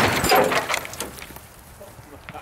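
The tail of a .50 BMG rifle's muzzle blast dying away, mixed with thick ceramic plates shattering and fragments clattering down; the loud noise fades over the first second into scattered ticks of falling debris.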